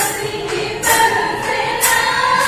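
Live Bihu folk music: a group of voices singing with long held notes, punctuated by sharp percussion strikes about once a second.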